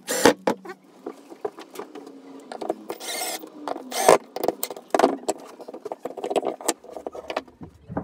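Cordless drill driving screws into small plywood parts, the motor running in short bursts that speed up and slow down with the trigger, mixed with clicks and knocks from the wood. It stops about seven and a half seconds in.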